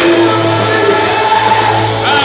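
Loud gospel music with a group of voices singing together over a held bass note.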